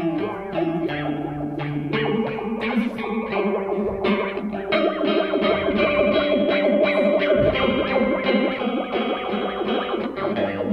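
Electric guitar played through an Old Blood Noise Reflector V3 chorus pedal in its Mirrors mode. Strummed chords and held notes carry a very fast, deep, vibrato-like chorus wobble over a long, slow resonant filter sweep, with the chorus moving four times as fast as the filter.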